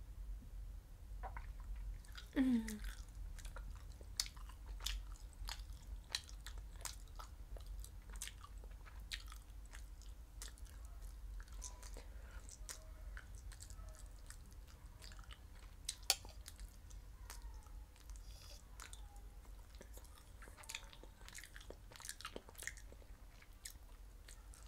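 Close-miked mouth sounds of eating and drinking: chewing, lip smacks and wet clicks scattered throughout, with a short falling hum about two seconds in and a sharp click about sixteen seconds in.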